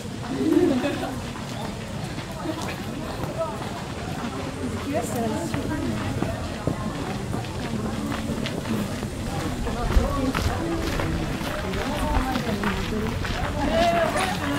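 Voices of people talking nearby, unintelligible and overlapping, with light footsteps and small ticks. One short low knock about ten seconds in.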